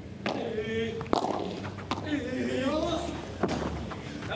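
Padel ball being hit in a rally: four sharp racket strikes and bounces, the last after a longer gap, with voices in between.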